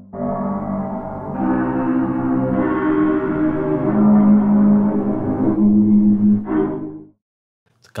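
A long, dark bass-hit sample from The Foundry Kontakt instrument, played through its granular 'grainer' effect and stretched into a sustained, layered drone of several pitched tones that build up. It stops about seven seconds in.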